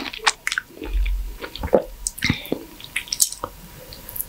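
Close-up wet squishing and slurping of a ripe, juicy mango being bitten, sucked and chewed, with irregular mouth smacks and clicks. A brief low bump comes about a second in.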